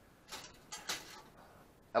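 A few brief, faint ticks and rustles from a tape measure being handled, its blade held extended across a frame.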